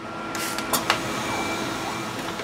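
Robot arm running with a steady mechanical whir as it lowers the coffee-filled balloon gripper onto a mug, with a few sharp clicks about half a second to a second in.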